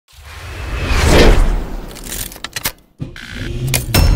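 Logo-intro sound design: a whoosh swells to a peak about a second in, a quick run of sharp hits follows, the sound drops out briefly just before three seconds, then builds again through more hits into a heavy bass impact at the end.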